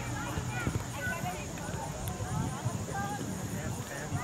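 Scattered distant voices of young players and adults calling out across a soccer field, short high-pitched shouts rather than talk, over a low rumbling background.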